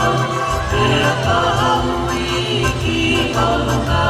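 A group of voices singing a song together over music, with a steady low bass beneath.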